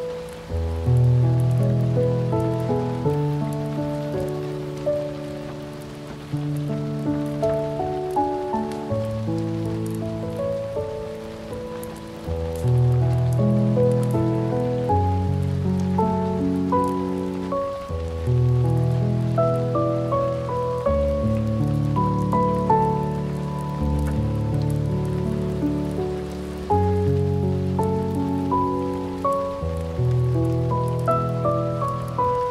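Slow solo piano piece: low chords struck every two to three seconds and left to ring under a higher melody. Behind it runs a steady background of rain pattering.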